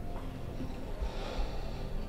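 A soft breath, about a second in, over low room tone and a faint sustained background score.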